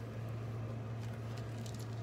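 A steady low hum, with faint rustling and small ticks as a cloth face mask clipped to a beaded lanyard is pulled on over the ears.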